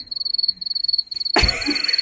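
A cricket chirping, a high thin pulsed tone about five times a second. About one and a half seconds in comes a brief rustle and thump, the loudest sound here.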